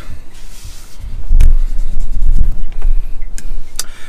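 Wind buffeting the camera's microphone in uneven low rumbling gusts, heaviest from about a second in, with a few sharp knocks from the camera being handled.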